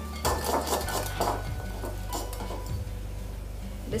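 Wire whisk beating thick batter in a glass bowl, its wires clinking against the glass about three times a second, the strokes thinning out after about a second and a half.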